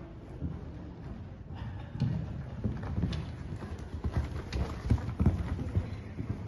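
Appaloosa horse cantering on a sand arena surface: dull, muffled hoofbeats that grow louder from about a second and a half in as the horse comes nearer.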